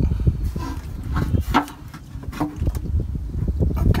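The steel transmission pan of a Ford FMX automatic being worked loose and lowered by hand: a few light knocks and scrapes over a low rumble.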